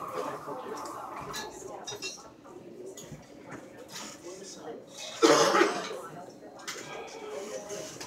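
Low murmur of people talking in a cafe between songs, no music playing. A short, loud sudden burst of sound breaks in about five seconds in and dies away within a second.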